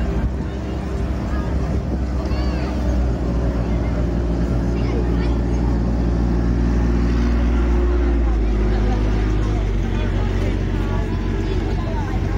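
Engine of a ride-on land train running steadily as it tows its passenger carriages past. It is loudest as the locomotive comes close, about seven or eight seconds in, and its note changes shortly after as it goes by.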